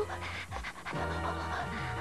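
Cartoon background music with held notes over a bass line.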